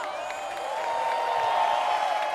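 Applause and cheering from a studio crowd, swelling after about half a second, with faint music underneath.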